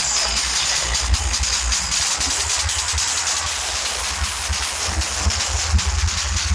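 A DJ sound system playing very loud, with deep bass thumps under a dense, hiss-like wash of noise and no clear melody.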